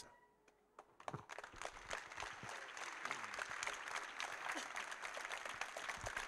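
Audience applauding, starting about a second in after a brief silence and going on steadily.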